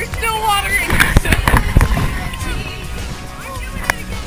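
Water splashing close by as a swimmer moves through river water, with a cluster of sharp splashes between about one and two seconds in. Excited voices come just before them.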